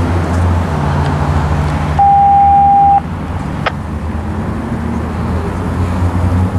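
Steady low rumble of street traffic and idling vehicles. About two seconds in, a single steady electronic beep lasts about a second and stops abruptly. A sharp click follows shortly after.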